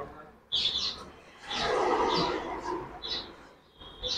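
Small birds chirping in short, repeated high calls, with a louder rushing hiss lasting about a second and a half in the middle.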